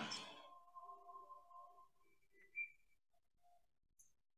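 Near silence in a pause between spoken remarks, with a few faint thin tones and one short blip about two and a half seconds in.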